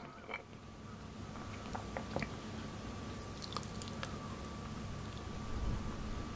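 Faint crunching footsteps over rocks and pebbles, a scatter of small sharp clicks over a low rumble, with a faint steady high tone coming in about a second and a half in.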